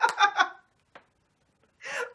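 A man laughing hard in quick bursts that stop about half a second in; after a pause, a sharp gasping breath in near the end as the laughter starts again.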